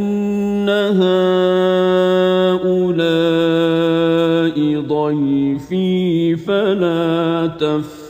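A man's voice chanting the Qur'an in Arabic, in the melodic style of tajwid recitation. He holds long notes that step and turn in pitch, with short breaks between phrases.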